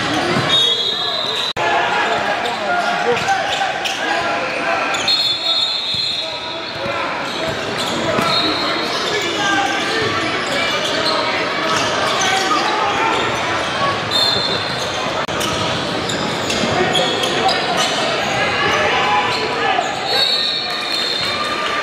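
Live basketball game in an echoing gym: the ball dribbling and bouncing on the hardwood, sneakers squeaking in short high squeals several times, and indistinct shouts and chatter from players and spectators.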